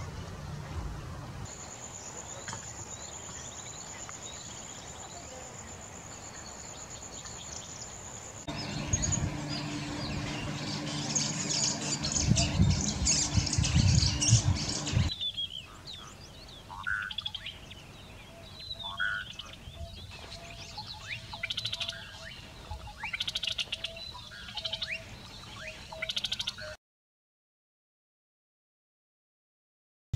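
Field recordings of wild birds calling, in several cut clips: the first has a steady high tone behind it, the middle is louder, and the last holds repeated short calls. The sound cuts to silence about a second before the end.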